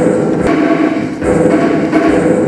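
Live theatre music: heavy percussion strokes, two of them a little under a second apart, over sustained low droning tones from strings and electronics.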